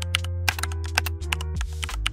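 Computer keyboard typing sound effect, a rapid run of key clicks, over background music with sustained bass and held chord tones.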